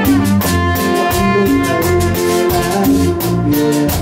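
Live band music: trumpets playing a melody over bass and drums, with a steady percussion beat of a few strokes a second.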